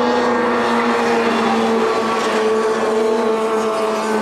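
Junior 340-class racing snowmobiles running at speed through a turn of an ice oval, several two-stroke engines making one steady high drone that drops slightly in pitch.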